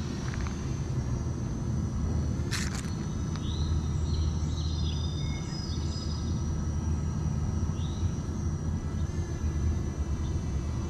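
Outdoor ambience: a few short bird chirps and a brief warbling phrase over a steady low rumble and a faint steady high tone, with a quick cluster of clicks about two and a half seconds in.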